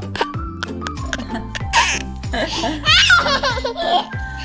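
A toddler laughing in a quick run of giggles, loudest in the second half, over background music.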